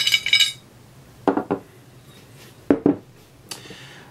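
Steel M14 rifle parts, a forged bolt and receiver, clinking and ringing as they are handled, then a few knocks as they are set down on the workbench.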